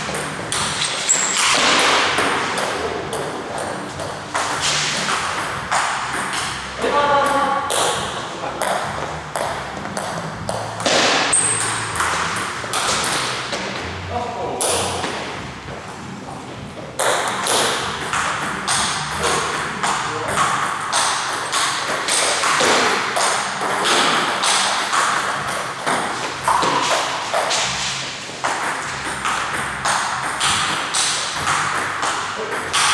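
Table tennis ball clicking off the paddles and bouncing on the table during rallies: a fast, irregular run of sharp ticks, easing off briefly about halfway through.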